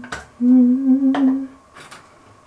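A woman humming one held note at a steady pitch for about a second, with a few sharp clicks around it.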